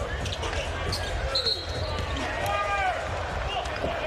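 Live basketball game sound in an arena: a steady crowd rumble with the ball bouncing on the court, and a short high squeak about a second and a half in.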